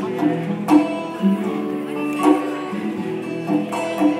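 Two acoustic guitars playing chords in a live instrumental passage, with sharp strums every second or so over held notes, heard from out in a hall.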